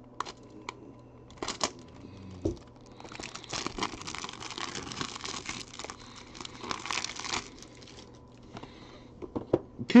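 Plastic wrapping crinkling and tearing as a sealed box of trading cards is unwrapped, busiest in the middle few seconds, with a few light clicks and taps before it.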